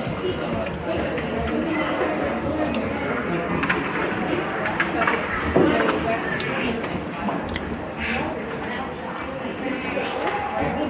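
Ice hockey play in an indoor rink: a steady babble of spectator chatter with several sharp clacks of sticks and puck, and the loudest knock, players hitting the boards, about five and a half seconds in.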